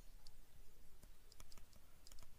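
Faint, scattered clicks and taps of a stylus on a pen tablet as it writes.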